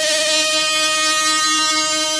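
Electronic music holding one long sustained note with a slight vibrato, with no beat behind it.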